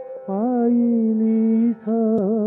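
A male voice singing an Odia bhajan on an archival radio recording. The voice slides up into a long held note and breaks off briefly near the end before the melody resumes.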